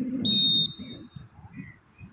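Referee's whistle on a volleyball court, one short shrill blast about a quarter second in that fades out quickly, over a low murmur of players' and onlookers' voices.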